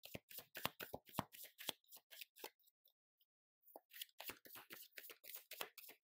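A tarot deck being shuffled by hand: quick runs of short card-on-card flicks and slaps, broken by a pause of about a second midway.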